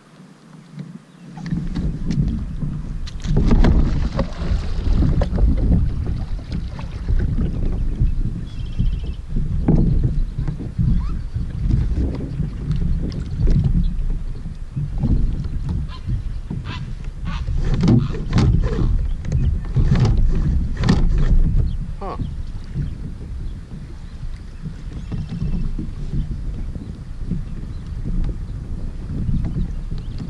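Wind rumbling on the microphone over water lapping at a plastic kayak's hull, with scattered knocks and splashes, most of them clustered a little past the middle.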